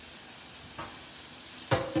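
Salmon fillet searing skin side down in hot olive oil in a frying pan, a steady sizzle. Near the end a sharp clatter with a short ring.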